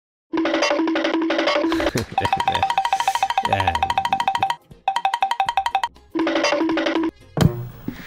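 Electronic dance music in short stop-start sections of bright, quickly repeated synth notes. It breaks off briefly about halfway and again near the end, just before a single sharp hit.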